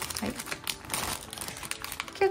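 Clear plastic parts bags crinkling and rustling in irregular crackles as they are handled.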